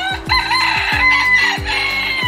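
A rooster crowing: one long, held crow, over background music with a steady beat.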